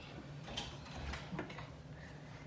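A few faint, scattered clicks and taps over quiet room tone.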